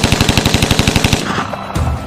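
A long burst of rapid machine-gun fire, well over ten shots a second, that cuts off a little over a second in. A deep low rumble follows near the end.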